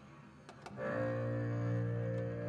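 Jazz quartet recording (saxophone, double bass, drums, piano): a quiet passage with two soft clicks, then a low sustained note with overtones comes in just under a second in and is held.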